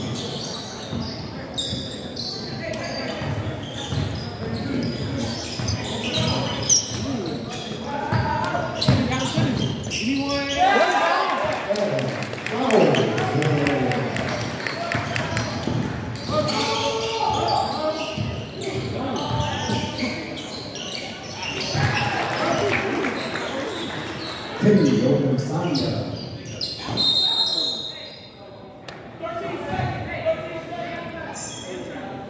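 Basketball dribbling and bouncing on a hardwood gym floor during play, with indistinct shouting from players and spectators, all echoing in a large gym.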